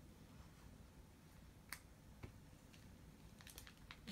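Near silence with a few faint clicks of a trading card in its plastic sleeve being handled and slid into a rigid plastic top loader.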